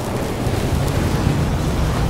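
Steady low rumbling, rushing sound effect under an animated logo intro, without a beat or distinct hits.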